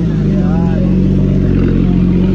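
Porsche Boxster's engine running at low revs as the car rolls slowly past at close range, a steady low drone, with voices faintly underneath.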